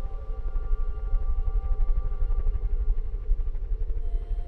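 Film soundtrack: a sustained orchestral chord, several high notes held steady over a deep, flickering low rumble.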